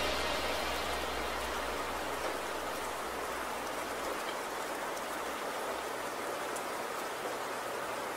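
Steady rain-like hiss left on the outro of a future bass track after its last chord, with a low hum fading out over the first few seconds.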